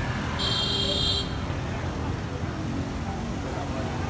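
Street traffic and crowd noise, with a steady low rumble. A short, high-pitched electronic beep sounds about half a second in and lasts under a second.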